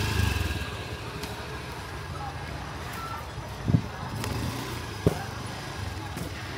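Motor scooter engine running at low speed, loudest at the start and fading within the first second, then a steady background with two short knocks, about three and a half and five seconds in.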